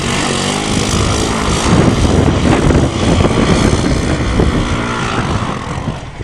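Small engine of a three-wheeler ATV running hard under throttle as it climbs a steep dirt hill, easing off slightly near the end.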